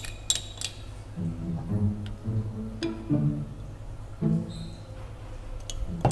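Metal spoon clinking against a small ceramic bowl a few times in the first second while stirring milk powder into water, over soft background music with steady sustained notes.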